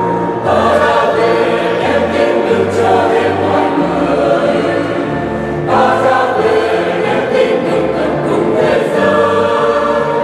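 Mixed choir singing a Vietnamese Catholic hymn in parts, with new phrases entering about half a second in and again about two-thirds of the way through. Underneath runs an instrumental accompaniment of low bass notes that move in steps.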